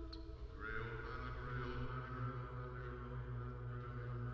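A choir singing softly: a held sung note ends just after the start, then the voices settle into a quiet, sustained chant-like chord over a steady low drone.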